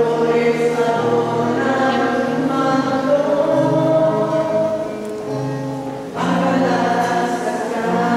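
A group of voices singing a slow hymn in long, held notes, the phrase fading about five seconds in before the next phrase begins about a second later.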